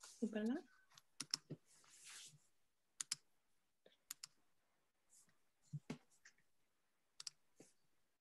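A short murmured voice sound at the start, then scattered clicks of computer keys, a dozen or so, singly and in quick pairs with pauses between.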